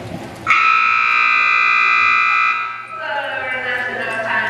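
Arena timing buzzer sounding one loud, steady blast for about two seconds, starting about half a second in and cutting off abruptly.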